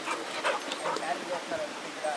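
A dog whining and yipping in short calls, with a few sharp clicks near the start.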